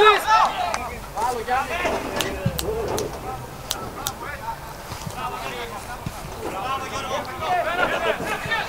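Voices of people on and around a football pitch calling out and talking, with a few short sharp clicks.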